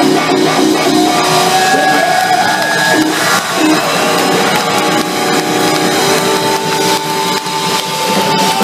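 Loud live blues-rock band: electric guitar holding long notes that bend in pitch, over bass and drums.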